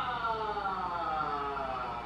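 A long, unbroken held shout from the TV broadcast, slowly falling in pitch: a commentator's drawn-out goal cry.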